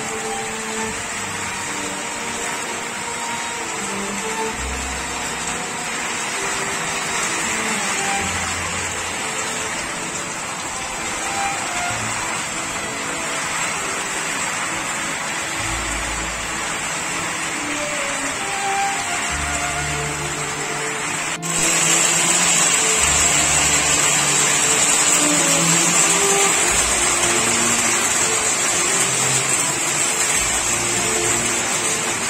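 Heavy rain mixed with hail falling, a steady hiss that jumps suddenly louder about two-thirds of the way through. Faint music plays underneath.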